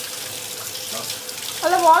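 Kitchen tap running, water pouring steadily over a smartphone held under it in a steel sink. A voice starts near the end.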